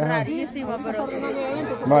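Several people talking in Spanish, voices overlapping in chatter, with one man saying "vaya" near the end.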